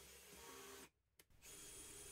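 Near silence: a faint, steady background hiss that cuts out completely for about half a second in the middle. The drill seen in the picture is not heard.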